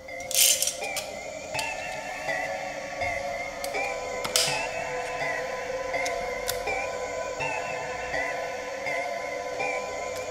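Background music with steady sustained tones, over which side cutters give two sharp snips, about half a second in and about four and a half seconds in, clipping plastic inside a project box, with a few fainter clicks between.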